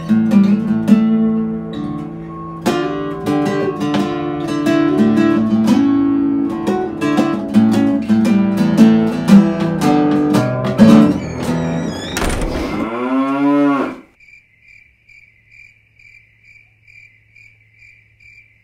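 Acoustic guitar played with picked single notes over held bass notes, closing with a long sliding, falling tone about twelve seconds in. The music stops about fourteen seconds in, leaving crickets chirping evenly, two or three chirps a second, over a faint low hum.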